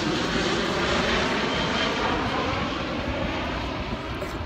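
Airplane flying past, its engine noise a steady rumble that slowly fades.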